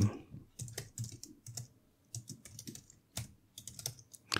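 Typing on a computer keyboard: irregular key clicks in short runs with brief pauses between them.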